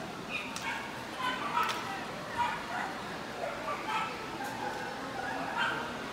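A small dog yipping in several short, high barks spread across a few seconds, over the murmur of crowd chatter.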